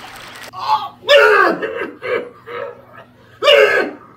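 A person's voice making a string of short wordless outbursts, about five, the loudest about a second in and near the end.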